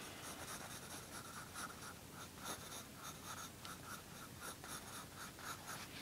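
Pencil scratching on paper in short, quick sketching strokes, about three a second, faint.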